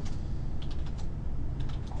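Typing on a computer keyboard: two quick runs of key clicks, over a steady low hum.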